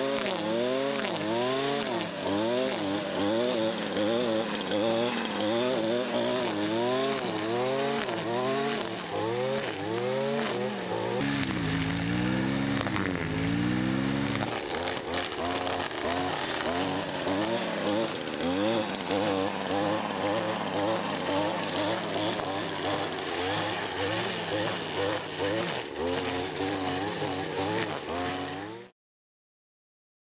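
STIHL brushcutter with a nylon-line mowing head running at high revs while cutting grass, its engine pitch rising and falling over and over as the load changes with each sweep. A lower-pitched stretch comes about 11 seconds in, and the sound stops abruptly near the end.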